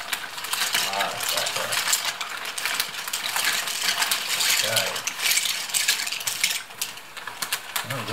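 Dry pasta pouring out of a plastic packet into a pot: a dense, continuous rattling clatter of many small pieces.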